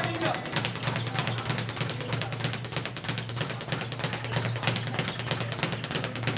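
Leather speed bag punched in a fast, even rhythm, slapping against its wooden rebound board in a rapid, continuous rattle.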